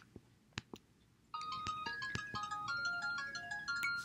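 A faint melody of short, high chiming notes at changing pitches starts about a second and a half in and keeps going, after a few faint clicks.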